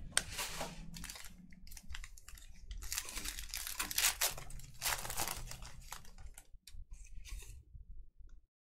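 Trading card pack being opened by hand: wrapper crinkling and tearing with rustling and small clicks, busiest and loudest in the middle before dying down near the end.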